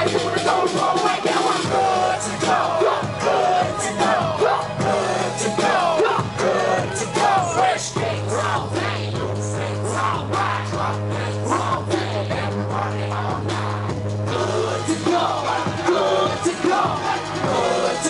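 Live hip hop music played loud over a concert PA, with a deep bass note held for several seconds in the middle and voices yelling over the track.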